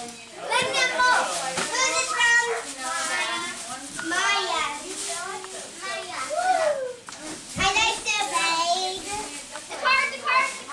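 Several children talking and shouting over one another, high-pitched overlapping chatter with a few louder shouts.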